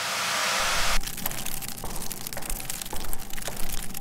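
Electronic static sound effect: a swelling hiss of white noise for about the first second that cuts off abruptly, followed by a dense, irregular crackle of clicks.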